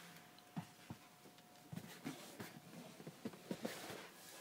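Faint rustling with scattered small clicks and knocks from a hand-held camera being moved about inside a car's cabin, more frequent in the second half.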